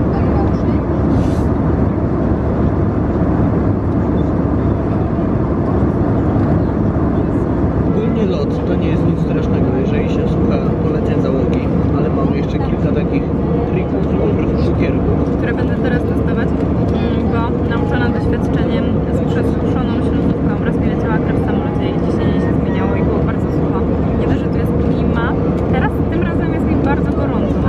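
Steady loud roar of a jet airliner's cabin in flight, engine and airflow noise. From about eight seconds in, voices talk close by over it.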